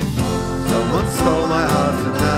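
Recorded band music in an instrumental passage: guitar, bass and drums under a lead melody that glides up and down.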